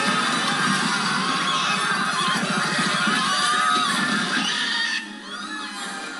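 Film soundtrack music played from a television, loud and dense, dropping suddenly to a lower level about five seconds in.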